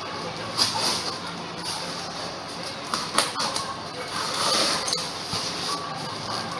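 Handling of a styrofoam shipping box and its packing: a series of short scrapes and rustles, the loudest about halfway through.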